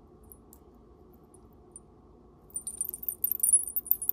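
Small brass-tone bells on a pair of dangle earrings jingling as the earrings are shaken: a bright, high tinkling that starts about two and a half seconds in.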